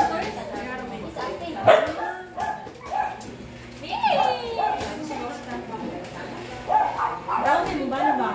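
People talking, with a dog barking repeatedly in short yaps.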